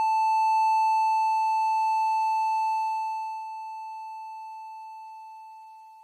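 Heart monitor flatline: one long, droning tone, the sign that the patient's heart has stopped. It holds steady, then fades away over the second half.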